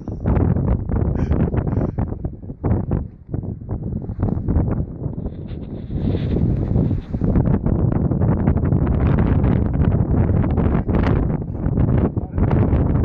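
Strong wind buffeting the microphone in gusts: a deep rumble that drops away for a moment about three seconds in.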